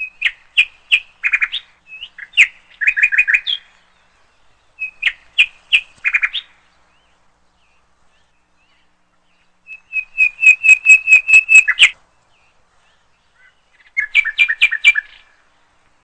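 A songbird singing in four short phrases of sharp chirps and quick trills, with pauses of one to three seconds between them. The longest phrase, about two-thirds of the way through, is a fast run of about ten repeated notes.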